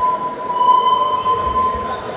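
A steady, high-pitched tone held for about three seconds, stopping near the end, over hall noise.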